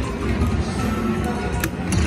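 Aristocrat Sahara Gold Lightning Cash slot machine playing its hold-and-spin bonus music while the reels make a free spin. There are a few short clicks near the end.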